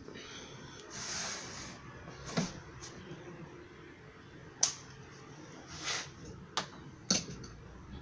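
A few sharp, separate clicks and knocks a second or two apart, the loudest about halfway, with a short rubbing hiss about a second in: handling noise from working the outer rubber window seal strip on a car door.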